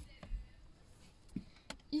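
A few light clicks and taps of hands handling curtain hardware in a minivan cabin, the loudest just at the start and others about a second and a half in, with faint fabric handling between them.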